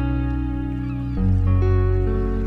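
Background music: held synthesizer chords over a deep bass note, the chord changing about a second in.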